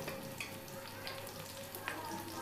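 Malpura batter frying on a flat iron tawa: a steady sizzle with scattered small pops.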